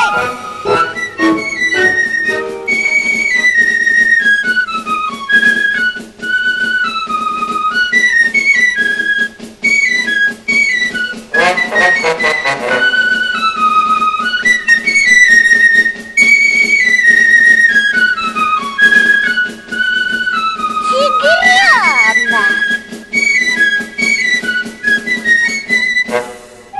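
Cartoon background music: a high, flute-like melody in stepping, mostly descending phrases over a steady accompaniment, with two brief wavering glides, one midway and one near the end.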